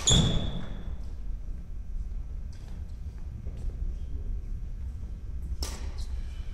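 Badminton racket striking a shuttlecock with a sharp crack, followed at once by a shoe squeak and thudding footfalls on a wooden court floor, with echo in a large sports hall. Another sharp knock comes near the end.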